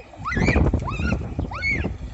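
About three short, high animal calls, each rising then falling in pitch, over a low rumble of wind on the microphone.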